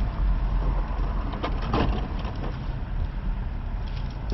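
Car engine and road noise heard from inside the cabin as the car pulls away and drives off, a steady low rumble. A few light clicks and a short rustle come about a second and a half in.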